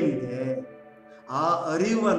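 A man's voice intoning a melodic, chant-like line. A held note fades out in the first second, and the voice comes back near the end with a wavering pitch.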